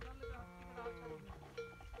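A bell clanking over and over at an uneven pace, each stroke a short ring on the same note.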